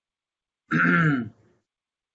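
A man clearing his throat once, a short voiced 'ahem'.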